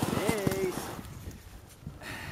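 Sled dogs running in harness, their paws and the sled making a quick patter of thuds on snow that thins out after about a second, with a brief call near the start.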